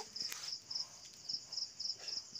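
Cricket chirping in a steady, evenly pulsed high trill.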